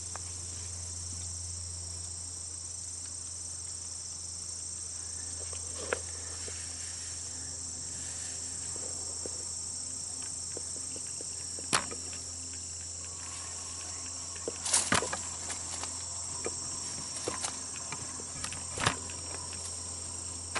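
Steady high-pitched chorus of crickets and other insects, with a few sharp clicks scattered through it.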